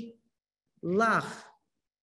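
A woman's voice making one short vocal sound about a second in, its pitch rising then falling, with silence on either side.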